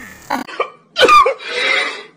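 A person's short, throaty vocal sound about a second in, falling in pitch and trailing off into a breathy rasp. A faint brief sound comes just before it.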